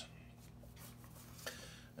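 Quiet room with a steady low hum, and faint handling of steel washers on a stone countertop, with one small tick about one and a half seconds in.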